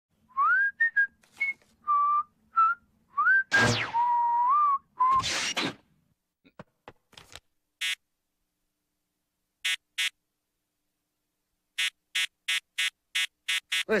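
A man whistling a jaunty tune in short sliding notes, with a quick falling swish partway through. Then come a few scattered clicks and, near the end, a quick run of sharp clicks or knocks at about four a second.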